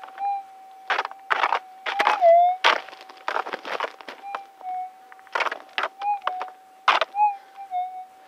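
Gold-prospecting metal detector's steady threshold tone, which swoops down in pitch once and wavers a few more times as the coil sweeps over a persistent target. Several short crunches and scrapes on stony gravel ground come in between.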